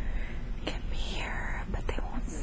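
A woman speaking in a soft, breathy whisper, with a couple of faint clicks about a second apart.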